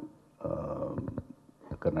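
A man talking into a handheld microphone. After a short pause he makes a drawn-out hesitation sound, then resumes speaking near the end.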